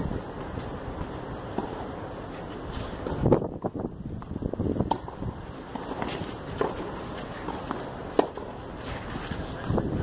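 Tennis ball struck by rackets in a doubles rally: a few sharp pops about a second and a half apart, the last the crispest, over steady wind noise on the microphone.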